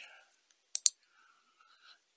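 Two quick computer mouse clicks, close together a little under a second in, selecting a menu item.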